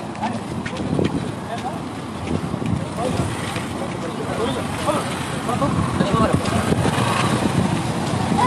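Wind buffeting the microphone, with people's voices and motorcycles going by underneath. It gets louder in the second half.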